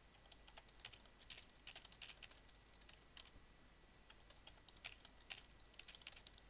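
Faint typing on a computer keyboard: irregular keystroke clicks, a few a second, as a short sentence is typed out.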